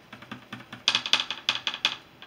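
A makeup brush tapping and clicking against a blush compact: a quick run of light clicks, faint at first and louder from about a second in.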